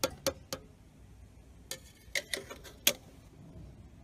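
Metal barbecue tongs clicking against the handle of a stainless steel grill cabinet drawer as the drawer is pulled open: a handful of sharp, irregular metallic clicks, the loudest two about two and three seconds in.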